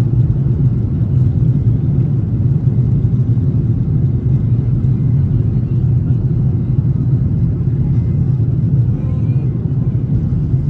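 Steady low rumble of a Boeing 737's jet engines and rolling gear, heard inside the cabin as the airliner moves along the ground.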